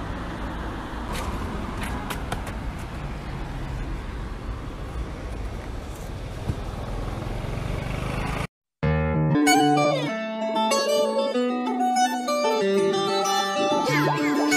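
Steady street traffic noise for most of the first half, cut off abruptly by a moment of silence, then background music with plucked strings.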